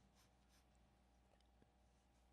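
Faint pencil strokes on drawing paper: two short scratchy strokes near the start, then a couple of light ticks, over a steady low hum.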